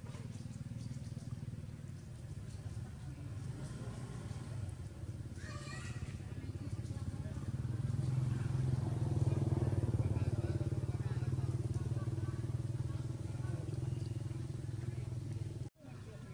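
A low, steady engine hum, growing louder past the middle and easing off again, then cutting off abruptly just before the end.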